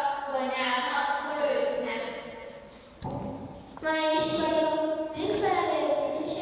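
A child's voice speaking into a stage microphone, and after a sudden break a little past halfway, voices in longer held, sung notes.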